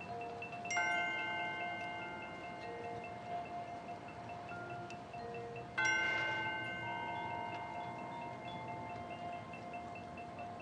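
Marching band front ensemble playing a soft passage on mallet percussion and chimes. A held tone and sparse single notes run underneath, and two struck, ringing chords of bells and chimes come about a second in and just before six seconds, each fading slowly.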